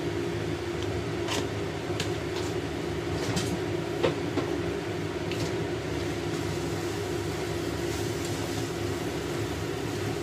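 A wooden spatula scrapes and taps against a stainless steel wok as thick curry paste is stirred and fried. There are several short scrapes and one sharper knock about four seconds in, over a steady low hum.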